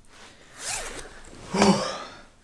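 A zipper on a clothing garment pulled in two quick strokes, the second one louder, with clothes rustling as someone sits down close by.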